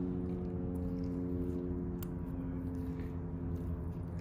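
Steady machine hum made of several even, unchanging tones, with one light click about halfway through.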